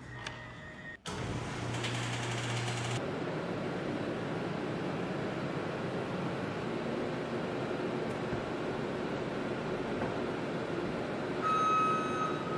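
A shop door's control button is pressed and the door motor hums for about two seconds. Then a New Holland L234 skid steer's engine runs steadily, and its backup alarm starts beeping near the end.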